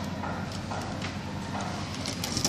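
A screwdriver working a terminal screw on a magnetic contactor, giving a few light clicks and taps over a steady low hum.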